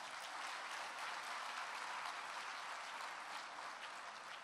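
An audience applauding, steady and fairly faint.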